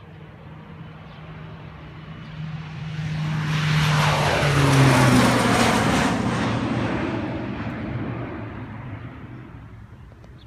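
Crop-duster airplane flying low overhead: its engine grows louder to a peak about five seconds in, the pitch drops as it passes, then the sound fades away.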